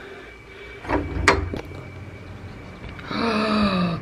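Iron latch on a pair of wooden shutter doors clicking open, with a low knock and a sharp click about a second in as the doors are pushed out. Near the end comes a woman's drawn-out, wondering "ooh".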